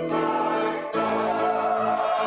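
Small mixed-voice choir (Salvation Army songsters) singing a sustained hymn-like piece in harmony, moving to a new chord about a second in.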